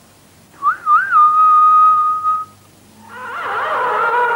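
A high whistled figure: two quick upward swoops, then one long held note lasting under two seconds. After a brief pause, music swells in with several sustained notes.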